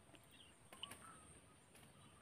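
Near silence: faint outdoor quiet with a few soft bird chirps about a second in.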